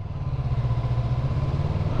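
Yamaha MT-03 parallel-twin motorcycle engine running steadily at low revs in traffic, with road noise.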